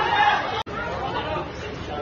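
Indistinct spectators' voices and chatter in the stands, loudest in the first half-second. The sound drops out for an instant a little over half a second in.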